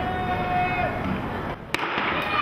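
Starter's pistol fired once, a single sharp crack near the end, starting the race.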